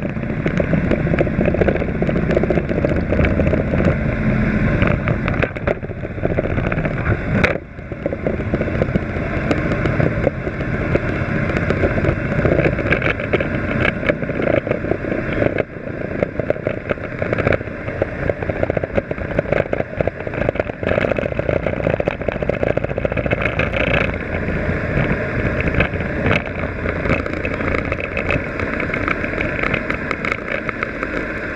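Steady, muffled running of the jet-ski engine that drives the flyboard, dull with little treble, overlaid by constant rubbing and knocking close to the microphone.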